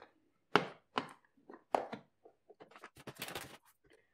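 Metal spoon stirring and scraping through cornstarch and liquid soap in a plastic tub: a few separate sharp scrapes or taps, then a quicker run of them near the end.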